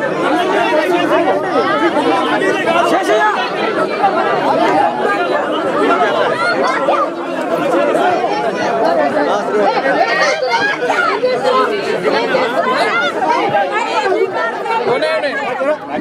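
A dense crowd of many people talking over one another at once, a continuous loud babble of voices with no single voice standing out.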